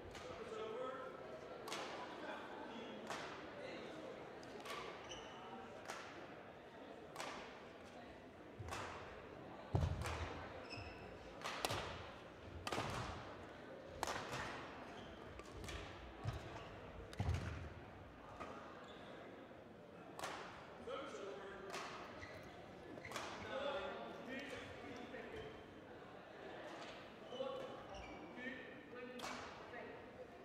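Badminton rackets striking shuttlecocks, irregular sharp hits echoing around a large sports hall, with a few heavier thuds among them and indistinct voices underneath.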